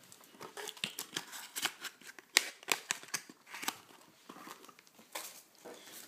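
Irregular clicks, taps and crinkles of objects being handled on a desk: candle jars being set down and picked up and plastic packaging rustling, with one sharper knock about two and a half seconds in.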